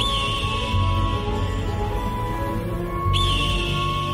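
Radio station jingle music: held synth tones over a low pulse, with a high whistling swoop that rises and settles at the start and again about three seconds in.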